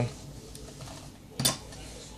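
Metal parts being set on a wooden drilling jig give one sharp metallic clack about one and a half seconds in, over faint handling noise.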